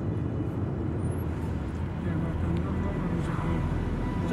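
A car driving in traffic, heard from inside the cabin: steady low engine and road noise.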